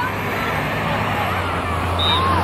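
Scattered distant shouts from players and spectators on a soccer field, over a steady low rumble.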